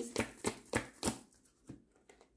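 Tarot cards being handled, with four or five sharp snaps in the first second, then a few fainter taps.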